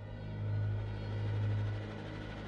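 A low, steady droning hum in a dark ambient soundtrack, swelling and easing twice, with a faint hiss above it as the held higher tones of the score fade away.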